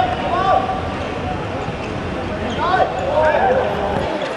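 Players' voices calling out on an outdoor hard football court, mixed with short squeaky chirps from shoes on the court surface, clustered near the start and again in the second half.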